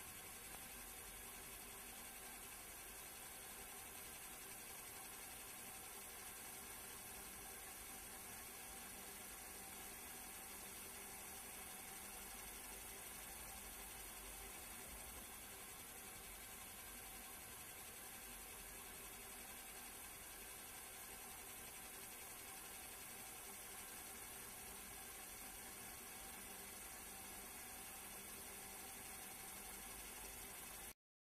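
Faint, unchanging hiss with a low hum: background noise of an old film transfer, with no other sound.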